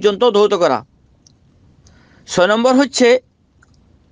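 A man speaking in a lecture: two short phrases with pauses of about a second and a half between them.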